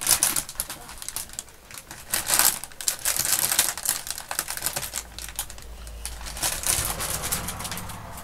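A clear plastic bag crinkling and rustling as it is handled, with many sharp little clicks, loudest from about two to four seconds in and thinning out after.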